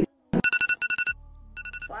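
Electronic alarm ringing in a rapid trill of beeps, two runs with a short break between, sounding as a wake-up signal.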